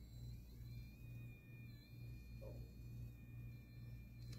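Faint low electrical hum that pulses a few times a second, with a faint steady high-pitched whine above it, from a running plasma-bulb oscillator bench setup.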